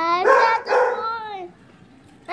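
A young child's long, loud yell, rough at its peak just after the start, then falling in pitch and stopping about a second and a half in.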